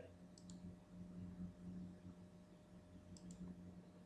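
Faint computer mouse clicks in two pairs, one about half a second in and one about three seconds in, over a low steady hum.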